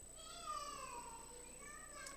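A faint, high-pitched drawn-out call that slowly falls in pitch over about a second and a half, with a short fainter call near the end.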